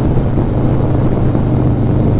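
1991 Harley-Davidson Dyna Glide Sturgis's 1340 cc Evolution V-twin running steadily at highway cruising speed, heard from the saddle under steady wind and road rush.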